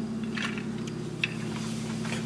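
Light handling of a stainless steel water bottle being wiped with a towel: soft cloth rubbing and a few faint clicks, over a steady low hum.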